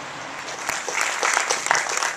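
Audience applauding, starting about half a second in and growing louder.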